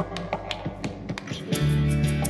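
Live band playing an instrumental passage on keyboard and acoustic guitar, with a quick, regular clicking beat. The low notes drop out briefly about a second and a half in, then a loud low chord comes in.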